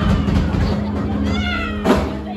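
Live rock band playing, with bass and guitar holding a steady low note. A high wavering cry rises over it about a second and a half in, and a sharp hit comes just before the end.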